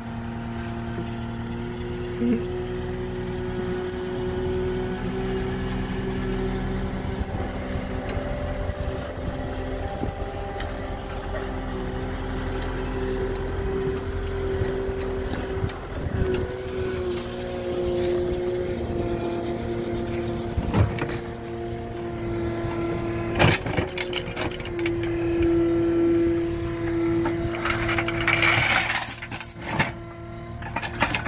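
Caterpillar 242D skid steer's diesel engine running steadily under hydraulic work, its pitch drifting a little as the boom moves a steel snow plow hung from a chain. Sharp metal clunks come twice about two-thirds of the way through, and a louder clatter follows near the end as the plow comes down onto the ground.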